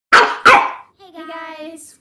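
A dog barks twice in quick succession, loud and sharp. A girl's voice follows.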